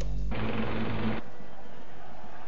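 Low background music ends with a short rush of noise. About a second in, this cuts off suddenly and gives way to the steady hiss and faint crowd murmur of an old football match broadcast.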